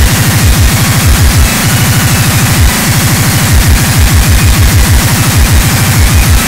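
Speedcore at 390 BPM: a fast, unbroken run of distorted kick drums, each one dropping in pitch, about six or seven a second, under a dense wall of noise.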